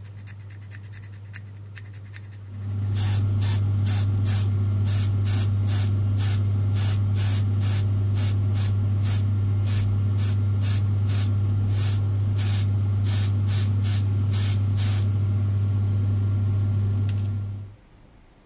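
Spray-painting a small plastic model part: paint sprayed in short hissing bursts, about two a second, over a steady electric motor hum that comes on about three seconds in. The bursts stop about fifteen seconds in, and the hum cuts off shortly before the end.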